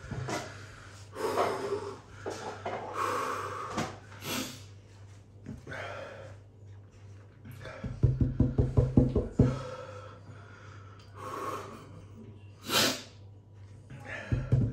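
A man breathing hard in separate sharp breaths through the mouth, the burn of a chip made with Carolina Reaper and Trinidad Moruga Scorpion peppers. A short pulsing vocal burst comes about eight seconds in.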